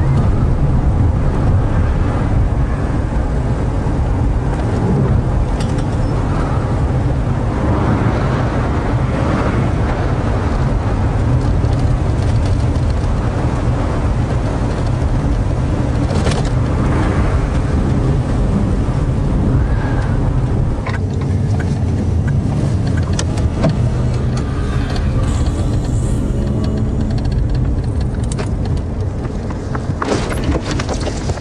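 Car cabin road noise: a steady low engine and tyre rumble heard from inside a moving car, easing off about two-thirds of the way through.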